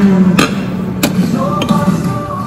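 Sharp clinks of metal cutlery on plates, two about half a second and a second in and a fainter one near the end, over background music with sustained pitched notes.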